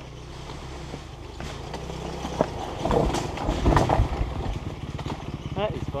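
Dirt bike engine running at low revs, then revving harder and louder from about halfway in as the bike rides over a rocky trail. Several sharp knocks come during the louder stretch.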